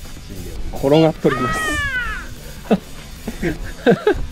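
A person laughing, with a drawn-out, high-pitched falling cry about a second long early in the laughter, over background music.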